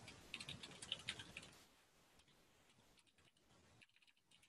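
Faint computer keyboard typing: a quick run of key clicks that stops about a second and a half in.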